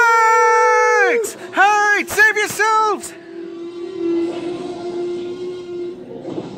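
Voice-acted screaming in fright: one long, loud held scream, then four short screams in quick succession, followed by a quieter steady held sound with a faint hiss.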